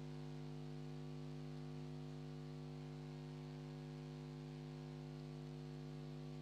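Faint steady mains hum with a light hiss, picked up through the headset microphone's sound system, with no other sound.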